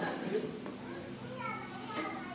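Faint, indistinct background voices in a hall, some of them high-pitched, with short calls in the second half.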